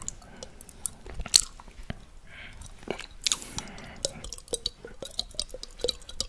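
Close-miked wet mouth sounds of a tongue licking a glass shot glass: a steady run of sharp smacks and clicks, the loudest about a second and a half in, with two short soft hissing swishes in the middle.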